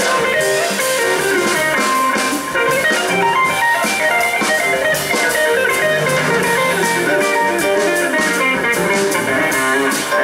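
Live funk band playing: a semi-hollow electric guitar leads with a busy run of quick notes over bass guitar and drum kit with cymbals.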